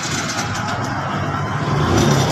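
Small motorcycle engine running steadily during a carburetor tune-up, getting a little louder near the end.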